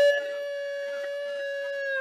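A person's voice holding one long, steady high note, like a drawn-out cry or whoop. It is loudest at the start, then holds at a lower level, and slides down in pitch as it ends.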